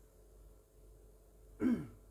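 A single short throat clearing about one and a half seconds in, a brief voiced sound falling in pitch, after a quiet stretch.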